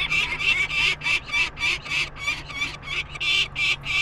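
Peregrine falcon chick, about three weeks old, calling in a rapid run of short, repeated cries, about four a second. This is the noisy protest of a chick being handled for banding.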